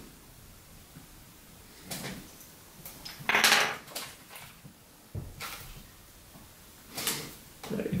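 Wire clay cutter drawn through a block of moist pottery clay and the cut slab lifted off: a few short, soft scrapes and a soft thump about five seconds in.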